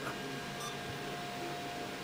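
3D printers running in the background, a faint steady whirring with a thin steady tone, and a soft click right at the start.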